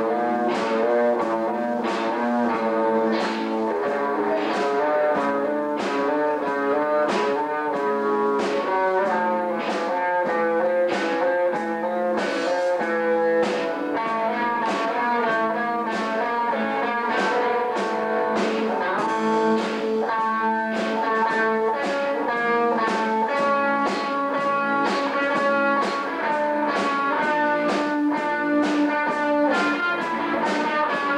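Live band jamming: electric guitars played through amplifiers over a drum kit keeping a steady beat.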